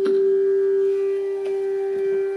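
Bansuri (long bamboo flute) holding one long, steady note in Raga Bihag. Two light tabla strokes sound beneath it, one at the start and one about one and a half seconds in.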